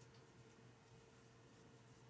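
Near silence: faint, soft rustling of cotton yarn being drawn through stitches by a metal crochet hook, over a faint steady hum.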